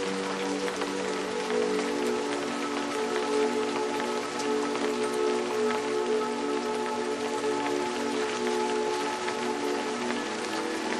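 Steady rain falling, with small individual drops ticking through it, over a soft music bed of slow, held notes.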